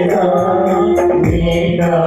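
Voices singing a devotional hymn in long held, gliding notes with instrumental accompaniment: a steady high jingling beat about four times a second and a low drum beat about one and a half seconds in.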